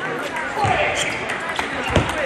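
Table tennis ball knocking against paddles and table during a doubles rally: a few sharp clicks, the loudest and heaviest knock just before the end, with voices in the hall around it.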